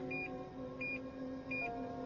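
Short high electronic beeps, three of them, evenly spaced about two-thirds of a second apart, over a steady low hum, like a sci-fi console or monitor sound effect.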